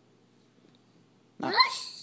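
Quiet room tone, then near the end a single loud spoken word, "Mouse."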